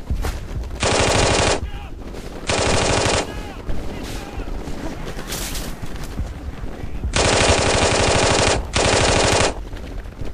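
Machine-gun sound effects in four bursts of rapid automatic fire: two short bursts in the first three seconds, then a longer burst and a short one near the end.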